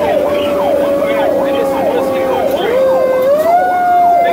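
Federal Q mechanical siren held at a steady scream, its pitch sagging and then winding back up about three seconds in. Under it an electronic siren sweeps rapidly up and down about twice a second. Both are heard from inside the fire truck's cab.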